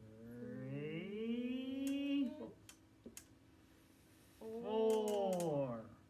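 A voice humming in long drawn-out tones: one rising over the first two and a half seconds, then a shorter falling one near the end. A few light taps of a marker on the board fall in between.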